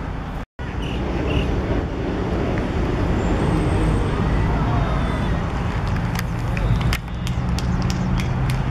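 Outdoor field-side ambience: distant voices of young players over a steady low rumble, with a few sharp knocks near the end. The sound drops out for a moment about half a second in.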